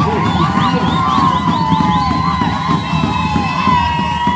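Several shrill whistles sliding up and down in pitch, some in quick repeated rising chirps, over a loud crowd's noise.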